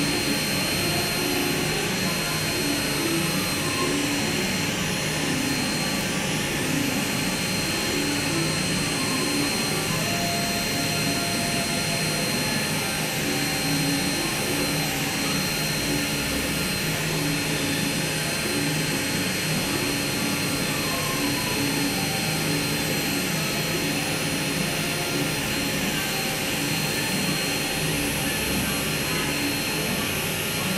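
Electric micromotor handpiece driving an FUE extraction punch, running with a steady whir and hiss and a faint high tone, without letting up.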